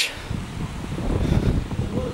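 Wind buffeting a handheld camera's microphone: an uneven low rumble that swells and fades.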